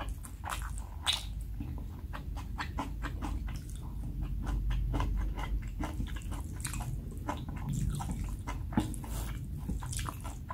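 Close-miked chewing of black-bean sauce (jjajang) instant noodles: a quick, irregular run of soft, wet mouth clicks and smacks with the lips closed.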